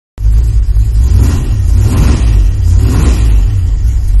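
Car engine and exhaust making a loud, deep rumble that swells a few times as it is revved, from the 1967 Ford Country Squire station wagon shown on the title card.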